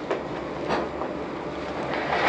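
Steady low room rumble with a few faint knocks and rustles as a person shifts and turns on a stool.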